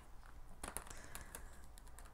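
Large tarot cards being handled and split for a shuffle: a quick run of light clicks and taps of card edges for about a second, starting about half a second in.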